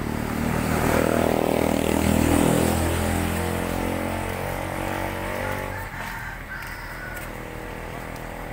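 A motor vehicle's engine passing by. It grows louder over the first two seconds, drops in pitch as it passes, and fades away by about six seconds in.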